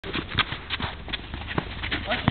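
Futsal players' running footsteps and ball touches on an outdoor artificial-turf court: irregular sharp taps and thuds, several a second.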